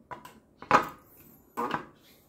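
Chrome-plated motorcycle parts knocking and clattering against an expanded-metal mesh table as they are handled: a few sharp knocks, the loudest about three quarters of a second in and another near the end.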